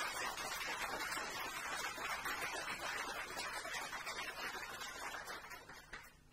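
Audience applauding, a dense steady clapping that dies away near the end.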